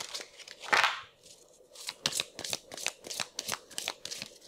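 A deck of divination cards being shuffled and handled on a table: short papery clicks and snaps, with one louder swish about a second in and a quick run of clicks, about five a second, in the second half.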